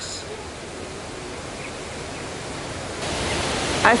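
Steady outdoor rushing noise with no clear single source, stepping up louder about three seconds in.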